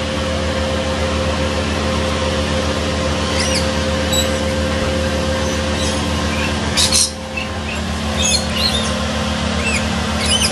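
Steady low mechanical hum with short, high-pitched wild bird chirps over it: a couple a few seconds in, a brief sharp call about seven seconds in, and a cluster near the end.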